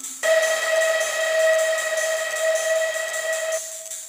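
Electronic music: a single held synthesizer note with a steady hiss over it, starting a quarter second in and fading out after about three and a half seconds.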